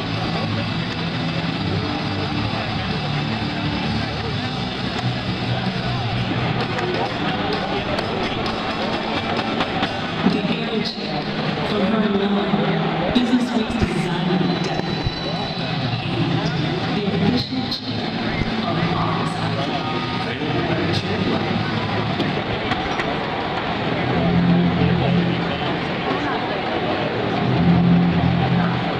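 Arena sound system playing a pre-game intro soundtrack: music mixed with voices at a steady, loud level.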